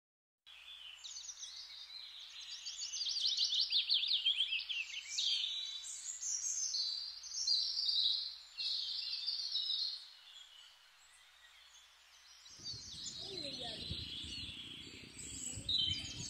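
Wild birds singing: rapid chirps and trills, loudest in the first half and thinning out later. A low rumbling noise joins in for the last few seconds.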